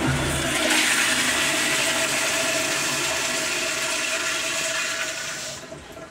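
Commercial toilet with a chrome flushometer valve flushing: a loud, steady rush of water with a faint steady tone running through it, fading out about five seconds in as the valve closes.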